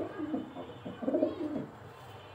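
Racing pigeons cooing in a loft: a short coo at the start and a longer one about a second in.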